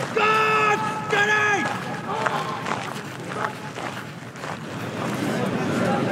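Two loud, drawn-out shouted military commands from a man's voice, each held on one pitch and then falling away. They are followed by the general noise of an outdoor crowd.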